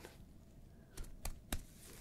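Gloved fingertips tapping lightly, a forehead percussion in an ASMR exam: three quick taps about a second in, within half a second.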